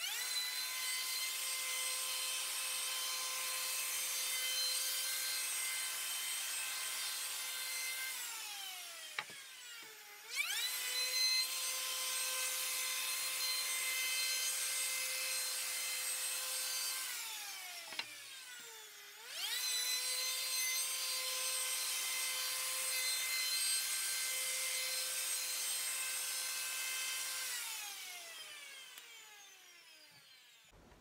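Handheld router with a radius (roundover) bit cutting the edges of wooden stair treads: a high motor whine over a hiss of cutting. It is started three times, each time spinning up, running steadily for about seven seconds, and winding down with a falling whine.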